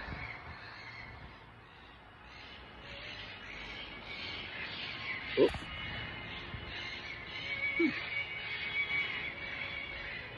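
Quiet background music with held tones. A brief, sharp sound comes about five and a half seconds in, and a shorter one near eight seconds.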